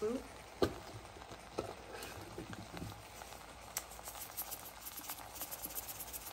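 Salt being sprinkled into a pan of soaked sweet rice, coconut cream and sugar: a sharp click about half a second in, a few scattered light clicks, then a quick patter of small ticks near the end.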